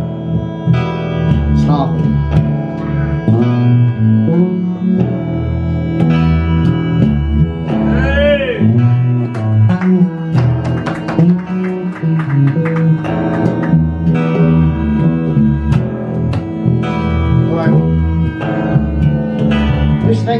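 A small live band playing an instrumental stretch of a song, a plucked bass guitar line to the fore with guitar over it.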